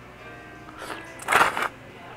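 A short, noisy slurp of cold zaru udon noodles, loudest about a second and a half in, over soft background music.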